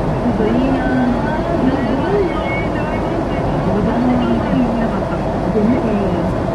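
A voice speaking over the steady road and engine noise of a moving car, heard from inside the cabin.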